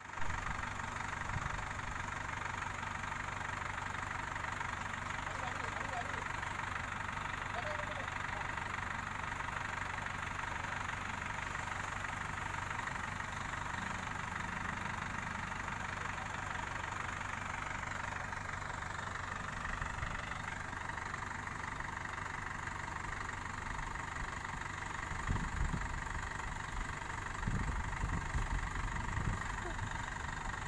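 Diesel engine of an ACE 12XW mobile crane running steadily at a constant pitch while it holds a log being loaded. A few louder low rumbles come in the last few seconds.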